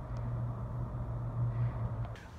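A steady low rumbling hum with a faint even hiss behind it, swelling slightly in the middle.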